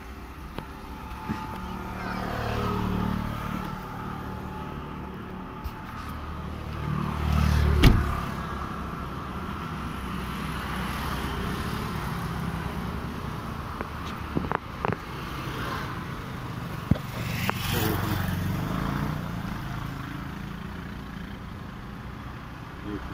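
Mercedes-Benz W123 wagon's engine running steadily, growing louder for a moment twice: about two to three seconds in, and again just before a sharp knock, the loudest sound, at about eight seconds. A few short clicks follow later.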